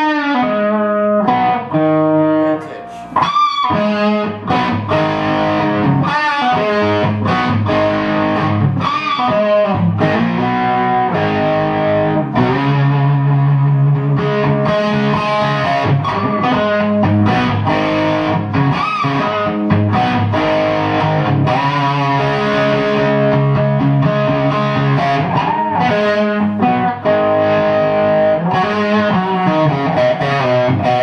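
Electric guitar, a pre-CBS 1963 Fender Stratocaster with 1959 electronics, played through an amp in a blues-rock lead with string bends and held notes, lightly overdriven.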